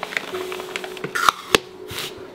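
Masking tape being pulled and torn along a window sill: a short rasping rip a little past halfway, then a sharp snap, over soft background music.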